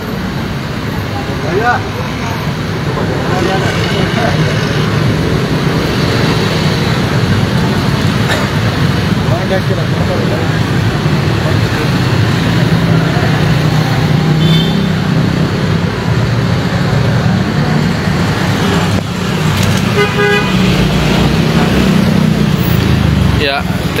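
Outdoor crowd chatter mixed with road traffic noise. A brief car-horn toot comes about twenty seconds in.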